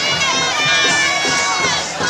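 Crowd of spectators cheering and shouting, many high-pitched voices overlapping.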